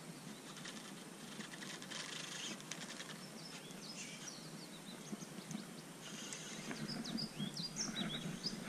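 A bird chirping in short, high calls over a low outdoor background hiss, the calls coming mostly in the second half.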